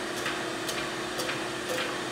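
Neptune 500 series hydraulically actuated diaphragm metering pump running at 30% stroke and pumping: a steady motor hum with a regular tick about twice a second.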